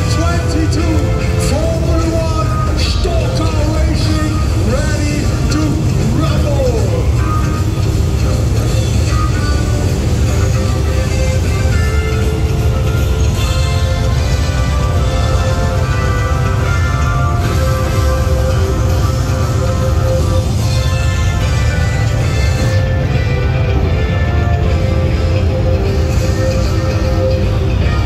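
Start music played loud over the circuit's public-address speakers, with held tones throughout and a voice over it in the first several seconds. Beneath it runs the steady low rumble of the Stock Car F1 engines as the field rolls in grid formation.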